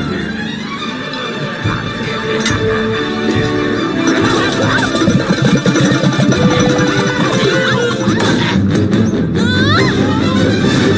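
Animated-film soundtrack music playing throughout, with a busy clatter of impacts mixed in about midway.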